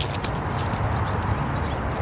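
Light metallic jingling, a quick run of small clinks that thins out after the first second, over a steady low background rumble.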